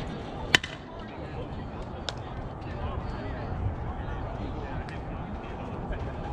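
A softball bat strikes the ball once with a single sharp crack about half a second in. A fainter knock follows about two seconds in.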